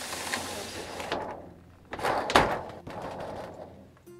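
A shower door sliding shut on its track, with a rubbing sound for the first second and a louder bump a little after two seconds in as it closes.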